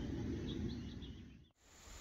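Faint outdoor ambience: a low background rumble with a few soft, short, high-pitched chirps. It fades to near silence about a second and a half in.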